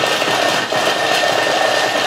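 Thermomix blade spinning at speed 5 and chopping a small amount of carrot, a loud steady whirring with the pieces being cut.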